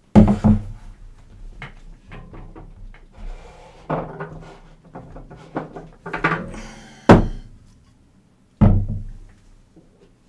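Knocks, thuds and rattles of objects being handled and moved about off-camera. The loudest bumps come right at the start and a sharp knock about seven seconds in, with a heavier thud near the end.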